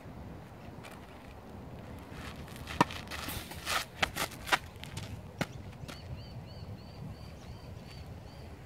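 Tennis serve on a clay court: a tennis ball bounced and struck with a racket, heard as a few sharp knocks over the first five seconds, the loudest about three seconds in, with a brief swish between them.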